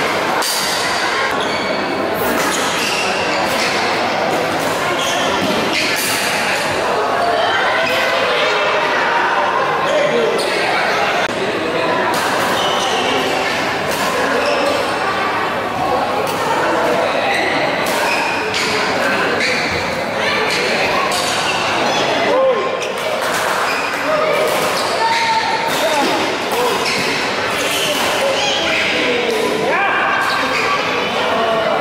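Badminton rally in a reverberant sports hall: repeated sharp racket strikes on the shuttlecock and players' footfalls on the court, over steady chatter from spectators.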